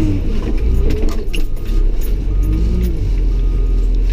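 Caterpillar wheel loader's diesel engine running steadily, heard from inside the cab, with light rattling and clicking in the cab over the engine's low rumble.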